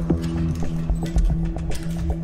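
Background drama score: held low notes under a quick ticking percussion beat, about four to five ticks a second.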